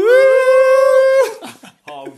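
A long, high howl-like vocal call that rises in pitch at the start, is held for about a second, then breaks off.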